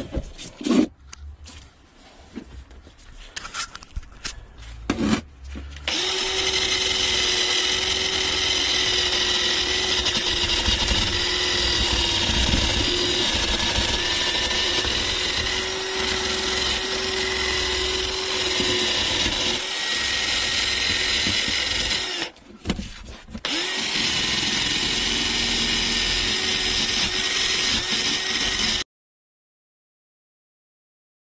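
Cordless 18 V Black & Decker drill running steadily with a cleaning attachment against a cast-iron valve handwheel, scrubbing off rust. It starts about six seconds in after a few clicks and knocks, stops for about a second near the 22-second mark, runs again, and cuts off just before the end.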